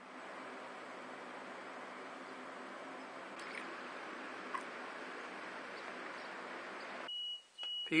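Lemon juice poured from a plastic bottle into glass cups, a steady pour that stops suddenly. Near the end a piezo buzzer, run off the five-cell lemon-juice battery, gives a high steady beep twice, briefly, as its lead touches the cell.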